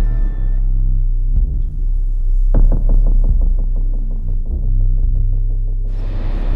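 Trailer score: a loud, deep bass drone, joined about two and a half seconds in by a fast, evenly spaced pulsing that fades away near the end.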